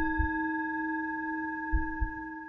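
A bell-like chime struck once, ringing on as a steady tone that slowly fades, with a brief low thud underneath near the end.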